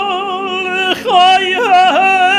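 A solo tenor voice sings cantorial chant, holding a high note with wide vibrato over a male choir sustaining a steady chord beneath it. About a second in the voice breaks off briefly, then runs through quick ornamental turns before settling on the held note again.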